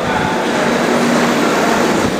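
Madrid Metro underground train running through the station, a loud steady rumble that swells slightly just after the start and then holds.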